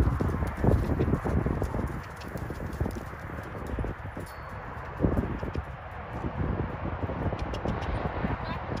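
Hoofbeats of a ridden horse moving briskly on soft sand: an uneven run of dull thuds.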